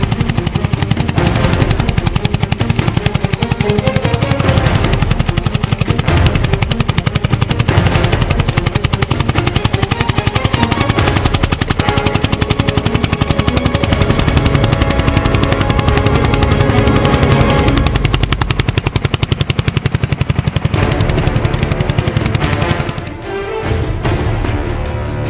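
Vintage tractor engine pulling a plough, running with a fast, even exhaust beat. Music plays underneath.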